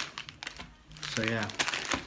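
Plastic Wai Wai instant-noodle packet crinkling as it is handled, loudest in a burst at the start and then in scattered light rustles.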